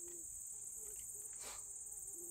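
Steady high-pitched chorus of crickets singing in the meadow, with a faint low buzz of a flying insect coming and going.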